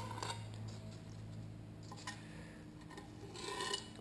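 Blunt knife blade dragging through window tint film on glass, a few faint scraping strokes; it cuts like sandpaper because the blade is worn out.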